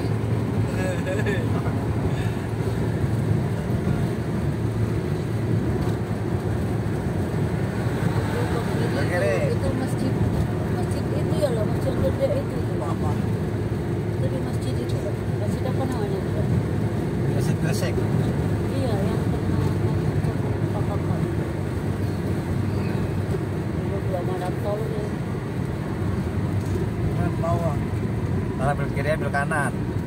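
Car cabin noise at highway speed: a steady low rumble of tyres on the road and the engine, holding an even level throughout.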